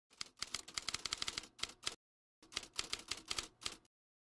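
Typing sound effect: two quick runs of keystroke clicks with a short pause between them, as if two lines of text were being typed out, then it stops.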